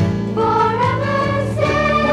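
A choir sings a sing-along song over instrumental backing. The sung line moves into a new phrase about halfway through.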